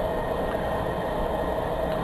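Charcoal gasifier's electric startup fan running with a steady whir, drawing air through the charcoal bed while the gasifier heats up and purges its oxygen before the engine can be started.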